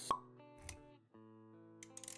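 Intro-animation sound effects over music: a sharp pop right at the start, a softer pop with a low thud just over half a second later, then a held chord of steady notes with light clicks near the end.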